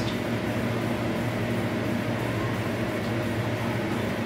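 A steady hum and hiss with no clear rhythm or beat.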